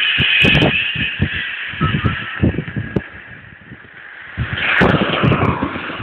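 FM radio tuned to 90.8 MHz pulling in a distant station over sporadic-E propagation, the signal breaking up into hiss and crackling static. The noise dips in the middle and surges again about five seconds in.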